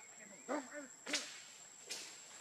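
Two sharp cracks, the louder a little over a second in and a weaker one near the end, among short snatches of a person's voice, over a steady high-pitched whine.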